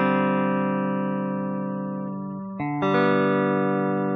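Music: slow guitar chords, each struck and left to ring and fade, with a new chord a little under three seconds in.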